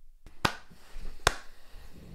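Two slow hand claps, a little under a second apart.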